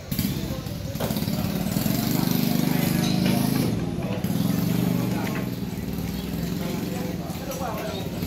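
Busy market background: people's voices mixed with a running engine, rising about a second in and loudest between two and four seconds, then easing off.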